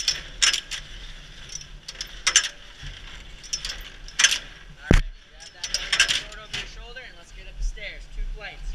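Aluminium fire-service extension ladder's fly section being worked on its rope halyard: irregular sharp metal clicks and clanks as the sections slide and the rung locks ride over the rungs, with one heavier clank about five seconds in.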